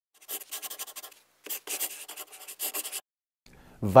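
Two bursts of quick, scratchy strokes, about ten a second: the first lasts about a second, and the second, after a short pause, about a second and a half. A man starts speaking just at the end.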